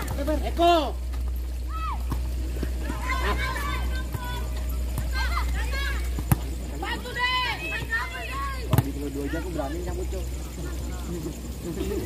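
Players and spectators shouting short calls across a football pitch during open play. A ball is kicked sharply about six seconds in and harder near nine seconds, over a steady low hum.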